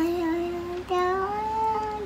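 A child singing without clear words, holding two long notes, the second a little higher than the first and rising slightly.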